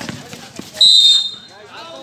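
A basketball bounces on the concrete court. About a second in, a referee's whistle gives one short shrill blast, signalling a stop in play.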